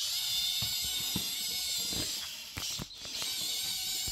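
Lego Technic small angular motors driving a miniature 4x4 buggy through its gear train, a steady high-pitched whine broken by a few clicks. The builder thinks the motors are overheating.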